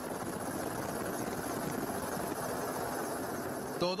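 Helicopter running steadily in flight, its engine and rotor noise a dense, even sound.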